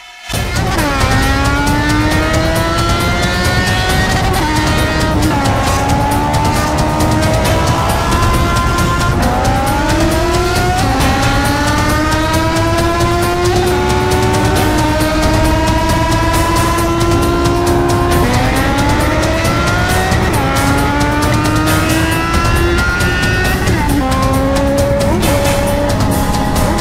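Yamaha XJ6's 600cc inline-four engine accelerating hard through the gears. Its pitch climbs for several seconds, then drops at each upshift, repeating about five or six times.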